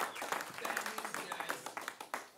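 Small audience applauding, the clapping tapering off, with people talking.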